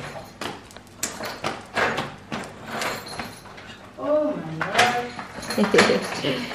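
A quick run of light taps and knocks in a tiled room, then a child's voice calling out near the end.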